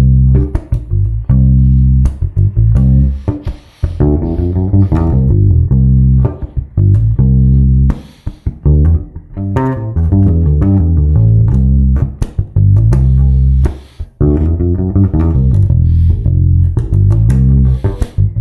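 Electric bass guitar played fingerstyle: a groove in repeating phrases of about four seconds, with a lick worked into the line.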